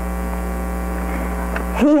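Steady electrical mains hum: a low drone with a buzzy stack of even overtones that does not change. A woman's voice starts a word near the end.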